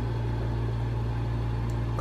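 Steady low electrical hum with an even hiss from a plug-in facial steamer running.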